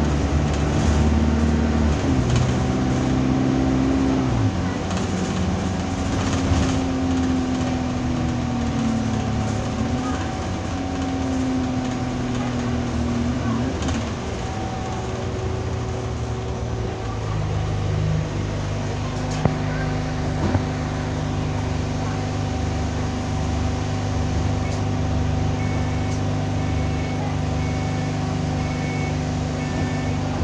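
Alexander Dennis Enviro200 bus's diesel engine and transmission heard from inside the passenger saloon. The engine pitch rises and falls several times through the first half as the bus pulls through its gears, then settles to a steadier drone, with a thin steady whine throughout. Faint short repeated beeps come near the end.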